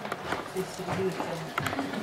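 Quiet, indistinct talking of several people in a small room, with a few faint ticks.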